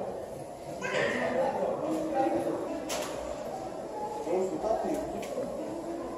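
Indistinct talking of people nearby, no words clear, with a couple of sharp clicks about three and five seconds in.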